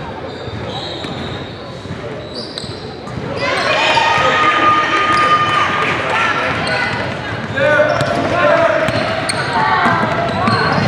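A basketball bounced on a hardwood gym floor in a large echoing hall. About three seconds in, it gives way to louder shouting voices and short high sneaker squeaks on the court, with further ball bounces as play runs up the floor.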